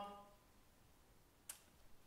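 Near silence: room tone in a pause between speakers, with one faint short click about one and a half seconds in.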